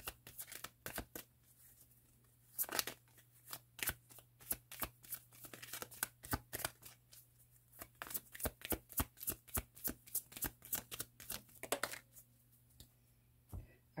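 A deck of oracle cards being shuffled by hand: quick, irregular runs of card clicks and slaps, pausing briefly about two seconds in and again shortly before the end.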